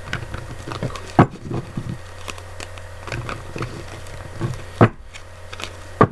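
Tarot cards being shuffled and handled: a run of small flicks and taps, with two sharp knocks, one about a second in and one near the end.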